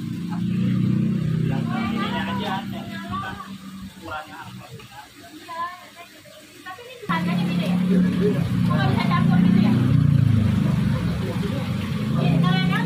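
Indistinct voices talking over a steady low hum; the hum thins out for a few seconds and comes back louder about seven seconds in.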